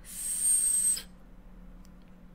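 A drag on a mechanical-mod e-cigarette with a rebuildable atomizer: about a second of airy hiss with a thin, steady high whistle as air is pulled through the atomizer's air holes. The hiss stops abruptly.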